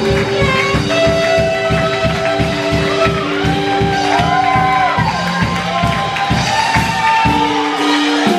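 Small jazz band playing live: piano, guitar, upright bass and drum kit, with held chords over a steady beat and a melody line that rises and falls in the middle.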